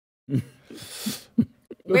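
A few short, breathy chuckles from the studio panel, broken by pauses, just before talk resumes near the end.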